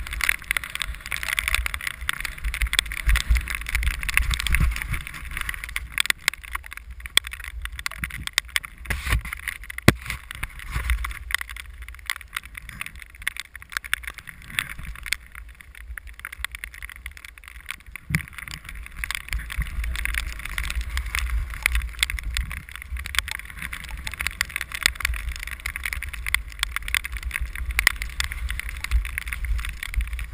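Skis sliding and turning over snow, heard from a GoPro worn on the skier, with wind buffeting the microphone. It is a steady rushing hiss over a low rumble, broken by scattered clicks and knocks, a little quieter in the middle.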